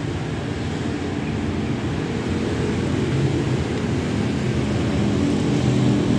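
Petrol engine of a 1960s Isuzu fire truck idling, a steady low drone that grows slightly louder near the end.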